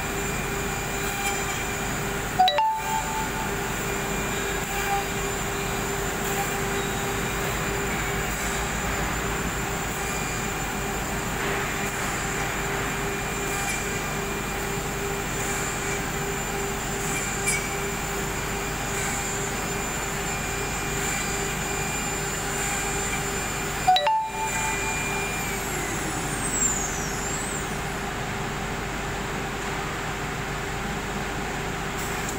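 SUDIAO SD-1325S automatic-tool-changer CNC router running a drilling job, with a steady spindle whine over machine and dust-extraction noise. Two sudden loud knocks come about two seconds in and again near the end, and after the second the whine falls away as the spindle slows.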